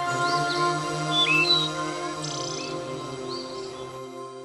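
Soft background music of held, steady tones with bird chirps woven through it during the first half, the whole gradually fading out.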